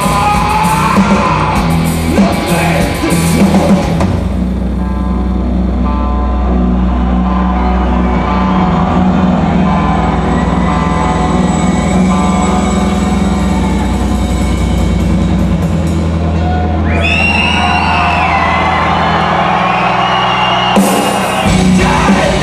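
Live rock band playing an instrumental section: the full band with drums and cymbals, then from about four seconds in a quieter stretch of heavy held bass and guitar notes. Near the end a high, wavering melodic line comes in, and the full band with crashing cymbals returns about a second before the end.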